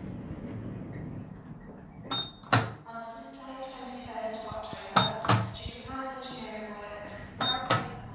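Push buttons on a lift car's control panel pressed three times, each press giving a short high beep and a pair of sharp clicks.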